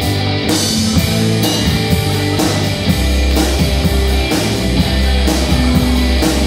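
Live rock band of electric guitar, electric bass and drum kit playing an instrumental passage without vocals, with regular cymbal strikes. The bass line grows heavier about halfway through.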